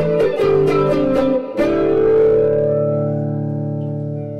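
Guitar music: a run of quick picked notes, then a chord struck about a second and a half in that rings on and slowly fades.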